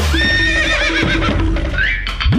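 A horse whinnying: one long call with a quavering pitch that starts just after the beginning and dies away about a second and a half in, over background music.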